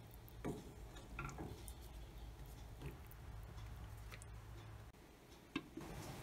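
A spoon stirring thick chickpea curry in a stainless steel pan, with a few soft, scattered taps and clicks against the pan. A light knock near the end as the glass lid goes onto the pan.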